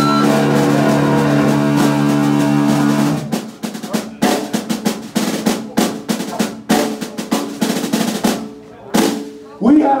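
Punk band's distorted electric guitar and bass holding one sustained chord for about three seconds. The chord cuts off and the drum kit plays a loose run of snare, tom and cymbal hits, with bits of ringing guitar, closing out the song. The hits stop shortly before the end.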